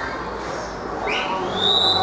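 Referee's whistle blown once, about halfway through: the note slides up quickly, then holds steady for about a second.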